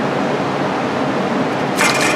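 Steady background noise, then a short, high metallic scrape near the end as a pry bar levers the aluminum transmission case against the engine, working it free of the dowel pins it is stuck on.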